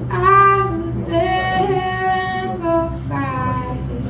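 A woman singing a slow melody with long held notes over strummed acoustic guitar, with a short breath between phrases about three seconds in.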